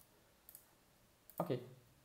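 A few faint, short clicks from working a computer, one at the start and another about half a second in. A man then says "okay".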